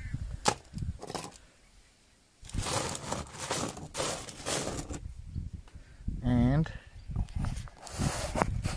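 Gravel of sapphire-bearing wash being spread out by hand across a flat sorting table, the stones clicking and scraping against each other and the table top. A few sharp clicks come first; after a short pause, a longer stretch of grinding and scraping follows as the pile is pushed flat.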